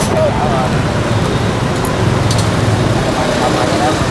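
Steady road traffic noise with engines running, and faint voices in the background near the start and near the end.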